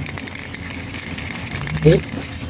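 Aerosol spray-paint can spraying onto a freshly welded steel muffler pipe: an even hiss with a rapid, ragged crackle of clicks.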